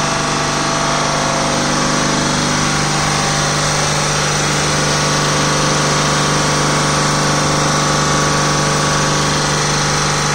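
Gram reciprocating ammonia refrigeration compressor and its electric drive motor running steadily: a strong, even hum over a dense mechanical clatter, with no change in speed.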